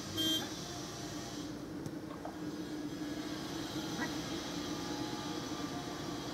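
A steady low hum over a faint hiss, with one short, high beep about a quarter second in.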